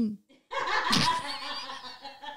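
A woman laughing hard: a loud burst of laughter about half a second in, with a high, wavering squeal, breaking into short gasping bursts near the end.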